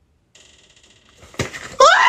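A faint high buzz, a sharp knock about one and a half seconds in, then a man's loud yell rising in pitch near the end.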